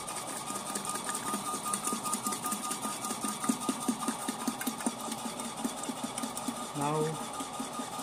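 Milkbot mini milk vending machine running as it dispenses milk into a plastic bottle: a steady mechanical whine with a fast, even chatter from its pump.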